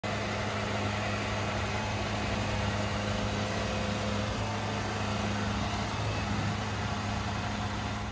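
Kubota DC68G Harves King combine harvester's diesel engine idling with a steady, even low hum.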